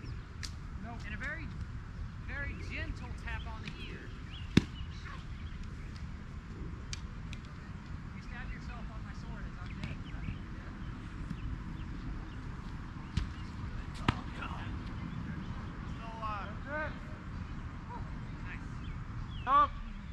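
Distant shouts and calls of players sparring on open ground, over a low steady rumble, with a few sharp knocks; the loudest knock comes about four and a half seconds in and a louder shout comes near the end.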